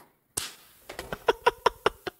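A man's stifled chuckling: a breath, then a quick run of about six short bursts in under a second.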